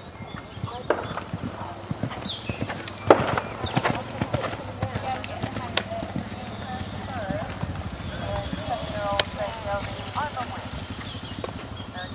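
Horse's hooves thudding on a sand arena as it canters between show-jumping fences, with a sharp knock about three seconds in that is the loudest sound.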